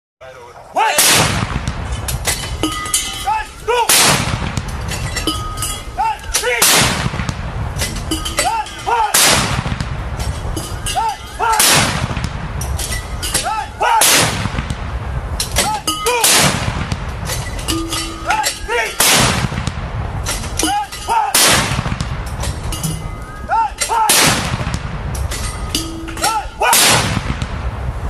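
Field artillery guns firing blank rounds of a 21-gun salute, about eleven loud booms evenly spaced roughly two and a half seconds apart, each trailing off in a long rolling echo.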